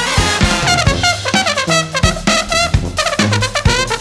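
A brass band playing a jazz-funk tune: trumpets and trombones play a horn-section riff over a low bass line and drum-kit hits.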